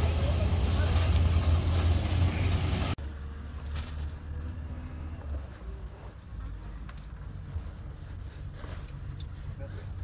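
A pickup truck's engine running as it tows a boat trailer past, a steady low rumble for about three seconds. Then a sudden drop to a much quieter steady low rumble.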